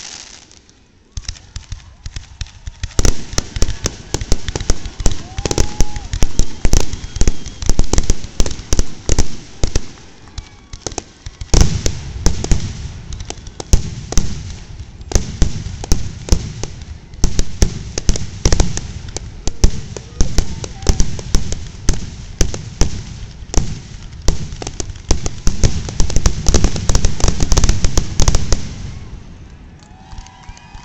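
Fireworks finale: a dense barrage of aerial shell bursts, bangs following one another in quick succession. It starts about three seconds in after a short lull and eases off near the end.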